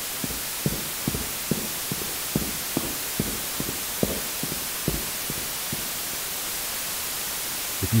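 Steady hiss of radio static, with irregular short low pops or clicks scattered through it.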